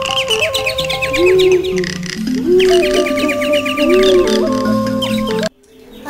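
Background music of sustained, slowly changing tones with quick bird-like chirps layered over it in two runs. The music cuts off suddenly near the end.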